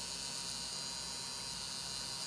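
Small brushed DC hobby motor with a pulley disc on its shaft, held in the hand and running steadily at full speed with a steady hum. It is switched fully on by an N-channel MOSFET whose gate is tied to 4.5 volts.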